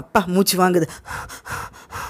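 A person acting out heavy breathing: a short voiced gasp, then a few breathy pants.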